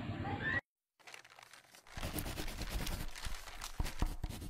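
Faint, irregular rustling and crinkling of paper sheets, with scattered small clicks, as during a written quiz. It follows a cut to dead silence of about a second near the start.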